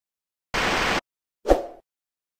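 Subscribe-button animation sound effects: a half-second burst of hiss about half a second in, then a single sharp pop at about one and a half seconds.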